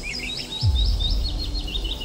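Bird chirping in a quick series of short, repeated high notes, about four a second, over background music with a deep bass note that drops in about half a second in.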